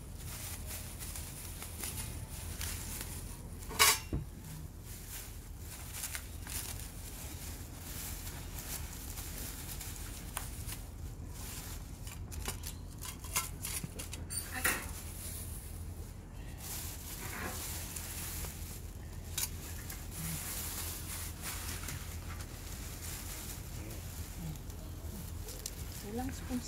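Cutlery being sorted into stainless steel utensil holders, with scattered clinks and rattles, the sharpest about four seconds in. A steady low rumble runs underneath.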